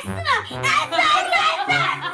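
A young girl's raised, exasperated voice over background music.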